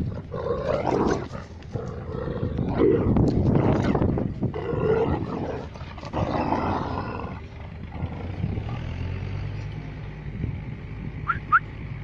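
Kangal dogs growling during rough play-fighting, in four throaty bursts over the first seven seconds or so, then quieting.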